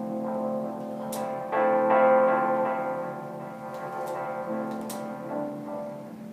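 Sustained keyboard-like chords from software instruments in Ableton, triggered by a homemade glove MIDI controller and heard through speakers. New chords come in about a third of a second in, at about a second and a half (the loudest, then slowly fading), and again around four and a half seconds.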